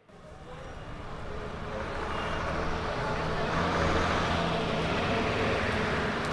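Road traffic with a motor vehicle's engine hum, most likely the approaching minibus, fading in over the first couple of seconds and then running steadily.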